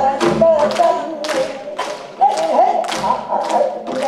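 Gayageum byeongchang: two women singing a Korean folk song with wavering, ornamented voices while plucking gayageum zithers, with sharp hand claps keeping time about twice a second.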